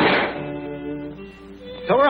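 Orchestral cartoon score: a loud passage ends just after the start and gives way to a few soft held notes that fade away.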